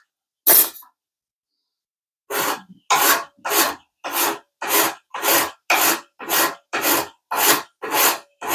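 Hand file rasping across a metal surface in push strokes: one stroke, a pause, then a steady run of about ten strokes, a little under two a second. The strokes are taking down a high spot to get the surface flat.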